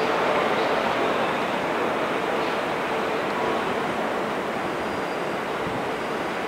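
Steady running noise of trains moving through a busy station, a continuous rumble and hiss of wheels on rail.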